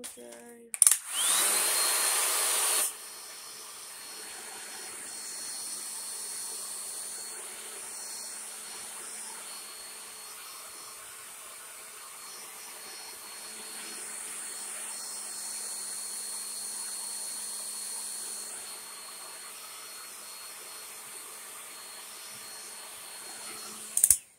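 Handheld hair dryer switched on about a second in, its motor whine rising as it spins up. It is loud for the first two seconds, then runs steadily at a lower level and cuts off at the end.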